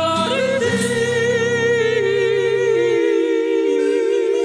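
Gospel song coming to its close: a singer holds one long note with vibrato over sustained accompaniment, and the accompaniment drops out about three seconds in while the voice keeps holding.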